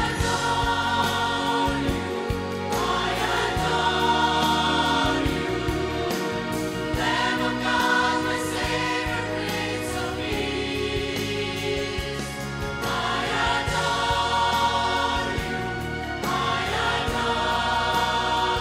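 Mixed choir of men and women singing a hymn together, in swelling phrases.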